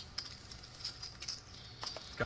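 Faint clicking of poker chips being handled at the table, with a couple of short clicks about a quarter second in and near the end, over low room noise.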